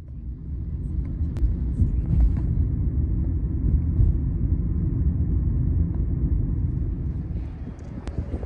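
Steady low road and engine rumble inside a moving car's cabin. It eases slightly near the end.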